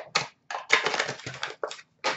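Card-pack wrappers crinkling and rustling as they are handled: a short burst, then about a second of continuous crinkling, then another short burst near the end.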